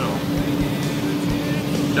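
Combine harvester running steadily while harvesting corn, heard from on board: a constant machine drone with a steady hum over a low rumble.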